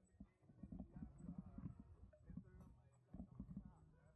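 Faint, irregular knocking and rattling from an electric kick scooter rolling over a paved street.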